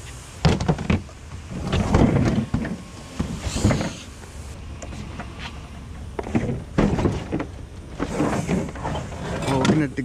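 A mini fridge being picked up and carried to a pickup truck: several knocks and thumps from its casing and the handling, with scraping and shuffling in between.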